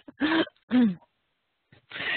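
A woman's two short voiced sounds through a headset microphone, a brief pause, then a breathy laugh starting near the end.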